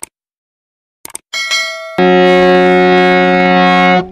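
A few short clicks and a brief chime, then about halfway through a harmonium starts sounding a loud, steady held chord.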